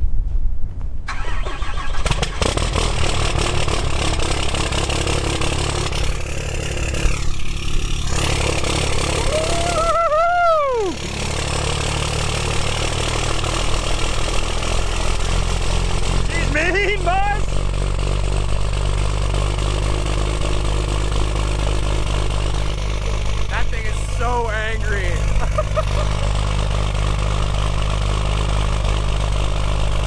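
Cummins inline-six diesel in a Ram pickup cold-starting in freezing weather after preheat: it cranks briefly, catches about a second in and settles into a steady idle.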